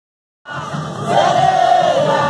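A large crowd singing loudly together, cutting in suddenly about half a second in after silence.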